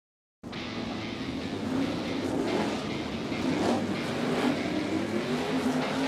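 Winged sprint car V8 engines at racing speed, cutting in suddenly about half a second in. The engine pitch climbs and then dips near the end.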